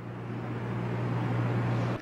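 Distant roar of Niagara Falls: a steady rushing noise that grows slightly louder, with a low steady hum underneath.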